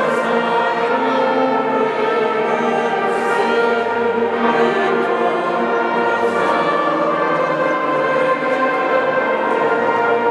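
Church music: a pipe organ playing full, sustained chords, with voices singing along.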